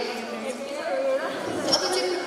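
Overlapping chatter of several voices in a large hall, with no single speaker standing out.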